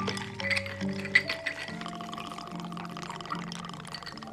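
Background music with held notes over a bartender's work: ice clinking in a glass mixing jug as a cocktail is stirred, with one sharper clink a little after a second in, then the drink being poured over a large ice cube in a tumbler.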